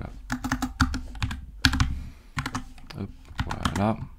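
Typing on a computer keyboard: quick, irregular runs of keystrokes, with a brief pause about halfway through.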